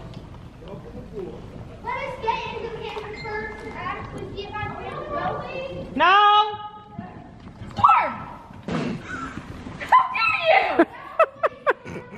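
Voices talking and calling out in a large echoing indoor hall, with one loud drawn-out call about halfway through. A few short sharp thumps come near the end.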